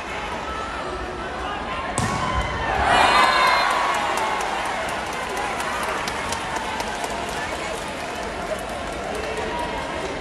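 Volleyball struck hard about two seconds in, followed by a burst of crowd shouting and cheering that echoes in a large indoor hall. After it come scattered sharp clicks over steady crowd chatter.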